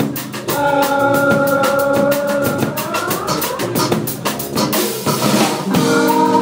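A live dub band playing, with the drum kit keeping a steady beat under held notes. About three seconds in, one note slides upward. Just before the end, a rush of noise swells before the held notes come back.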